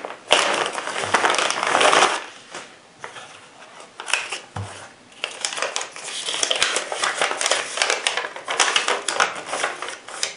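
Clear plastic packaging bag crinkling as it is opened and the holster is pulled out, strongest in the first two seconds; in the second half a folded paper instruction sheet rustles as it is unfolded.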